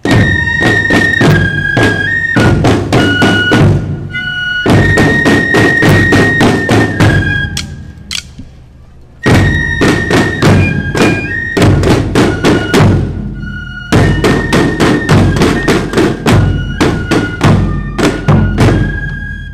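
Fife-and-drum marching band playing: a shrill fife melody over rapid snare-drum strokes and bass-drum beats. A short march phrase repeats, with brief breaks between phrases.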